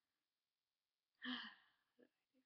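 A woman's short voiced sigh about a second in, trailing off breathily, followed by two faint small mouth clicks.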